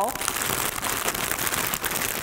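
Thin clear plastic packaging crinkling continuously as yarn cakes are handled in it.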